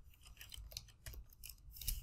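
Faint computer keyboard keystrokes: a scatter of light, irregular clicks as a ticker symbol is typed in, the loudest near the end.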